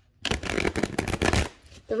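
A deck of tarot cards being shuffled: a dense run of rapid, papery flicks lasting just over a second, ending before a voice comes in.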